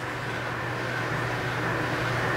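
Steady low hum with a faint even hiss: room background noise, with no distinct event.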